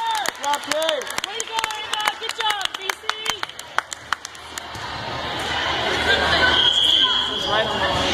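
Indoor gym sounds during a volleyball match: a quick, irregular run of sharp knocks and short voices in the first half, then crowd noise that builds steadily louder through the second half.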